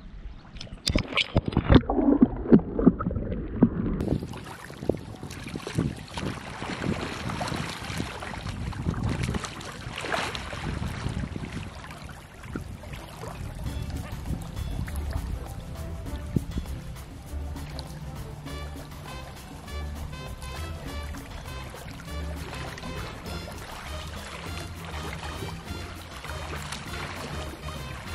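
Muffled splashing and sloshing of water heard through a GoPro pushed under the surface, loudest in the first few seconds. After that, background music with a steady beat fills the rest.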